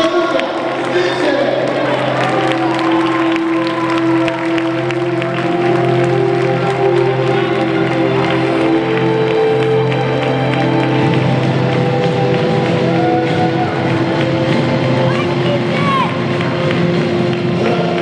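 Music playing with long held notes, over a crowd cheering and applauding.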